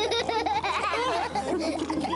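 Several cartoon voices laughing together, overlapping.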